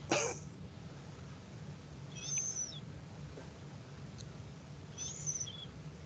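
Two brief, high bird-like chirps about three seconds apart over a faint steady hum. A short laugh sounds right at the start.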